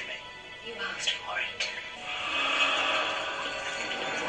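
Soundtrack of a TV drama episode playing: brief dialogue, then background music with a steady hiss-like sound effect from about halfway.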